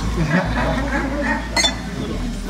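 Indistinct voices of people talking at the table, with a single short clink about one and a half seconds in.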